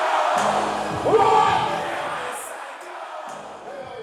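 Live rap concert: a crowd cheering and shouting over music from the stage, with a loud rising shout about a second in. The sound fades down toward the end.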